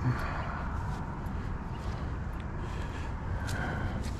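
Steady wind rumble buffeting the microphone, with a few faint rustles and clicks of handling.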